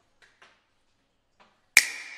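A few faint ticks, then near the end one sharp snap-like click with a short ringing tone dying away after it: an editing sound effect on a title-card transition.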